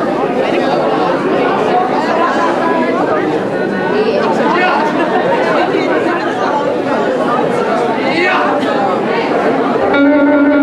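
Audience chatter in a large hall: many voices talking at once, with no single speaker standing out.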